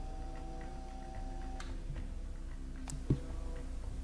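Tormek T4 wet sharpening grinder running, its water-soaked stone wheel turning with a steady motor hum and a regular ticking. There is a single sharp knock about three seconds in.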